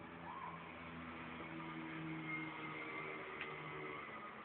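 Quiet background music from a television's speaker heard across a room: a few low, held notes that shift over the seconds, over a faint hiss.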